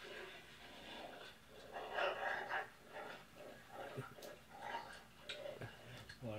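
A Rottweiler's faint breathing, soft uneven puffs of breath about a second apart.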